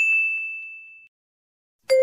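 A bright single-note ding sound effect, struck once and fading away over about a second, the chime that marks the correct answer in a quiz. Near the end a lower, louder chime with two tones begins.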